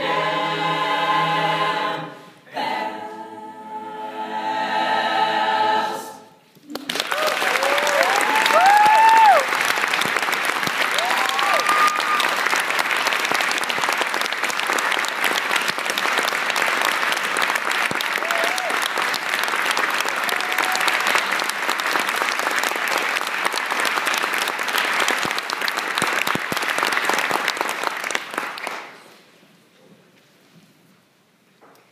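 A school choir singing the final held chords of a song, in two phrases with a short break between, cutting off about six seconds in. An audience then applauds for about twenty seconds, with a few whoops and cheers near the start of the applause, before the clapping dies away.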